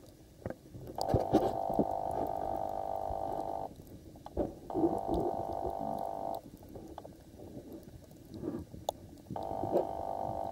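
Muffled underwater sound picked up through a waterproof camera's body: low rumbling with scattered knocks. A steady hum switches on and off abruptly three times: about a second in, again just before the middle, and near the end.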